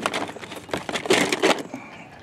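Metal cans clattering and knocking against each other and the plastic storage tote as a can of nuts is packed in among them: a quick run of knocks that is loudest about a second in and dies away before the end.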